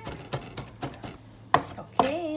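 Kitchen knife chopping and mincing on a plastic cutting board: a steady run of quick strokes, about three to four a second, with one harder chop near the end.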